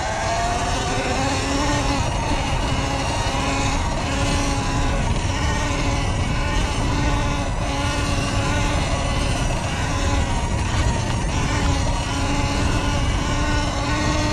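Sur Ron X electric dirt bike's motor and drivetrain whining while it is ridden across grass. The pitch rises as the bike accelerates over the first second, then holds fairly steady with small swells. Under it runs a constant low rumble of wind and tyres.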